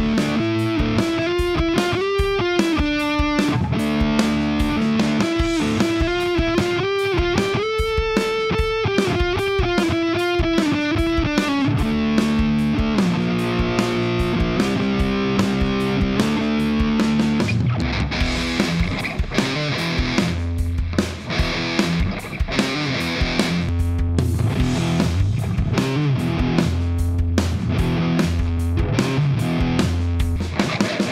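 Distorted high-gain electric guitar from a PRS SE Custom's bridge humbucker, through an EVH 5150-style lead tone. For about the first twelve seconds it plays held lead notes with bends and vibrato. Then it plays chords, and from about eighteen seconds in, low rhythmic chugging riffs.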